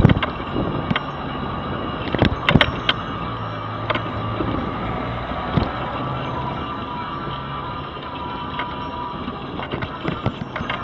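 Electric mobility scooter rolling along a paved footpath: a steady low motor hum under road noise, with sharp knocks and rattles as it goes over bumps in the paving, several close together a couple of seconds in.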